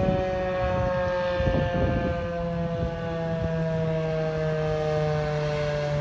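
Federal Signal 2001 DC electromechanical siren sounding one steady tone that slowly falls in pitch as its rotor (chopper) winds down after a test.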